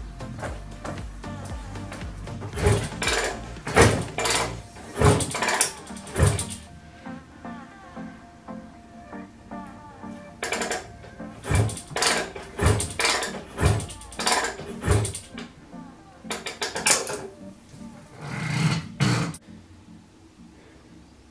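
Repeated kick-start strokes on a Honda NSR250 MC16 two-stroke twin, in three spells of short clunks, over background music. The engine turns over but never fires, because the kill switch is still set to off.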